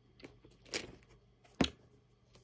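Pages of a Bible being turned by hand: three quiet, short paper rustles, the last a sharp click-like flick, as a passage is looked up.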